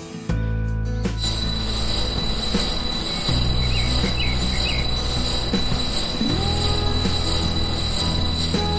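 Small electric motor of a homemade miniature concrete mixer turning its drum: a steady high-pitched whine that starts about a second in. Sustained background music chords play underneath.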